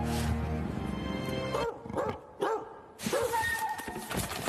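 Music with held tones drops away about a second and a half in, and a cat gives four short mews, each rising and then falling in pitch, spread over about a second and a half.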